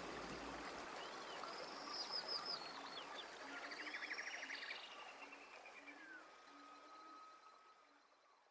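Faint birds chirping and trilling over a soft background hiss, with a few faint low notes left over from the fading beat; it all dies away to silence near the end.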